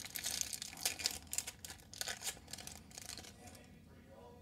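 Foil trading card pack wrapper being torn open and crinkled in the hands: a run of quick crackles that dies away near the end.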